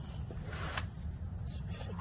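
Cricket chirping, a high pulse repeating about seven times a second over a low steady hum, with a brief scrape about half a second in from a razor blade cutting the bumper plastic.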